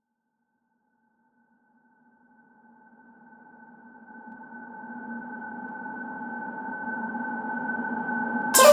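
Electronic music intro: a sustained synthesizer chord of a few steady tones fades in from silence and swells steadily louder.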